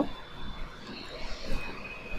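Faint steady background noise (room tone) with a thin high tone running through it, and one brief soft tick about one and a half seconds in.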